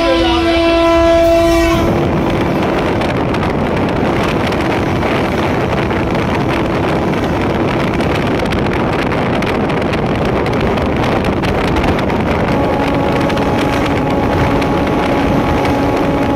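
A train horn sounds a steady chord that ends about two seconds in, followed by the loud, steady rushing noise of a train running at speed on the rails. A lower horn tone is held again for the last few seconds.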